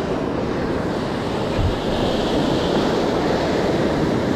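Ocean surf breaking and washing in, a steady rushing wash of waves.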